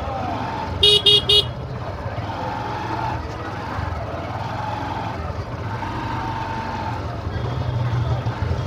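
Three quick toots of a vehicle horn about a second in, over a steady low rumble and the chatter of a busy market crowd.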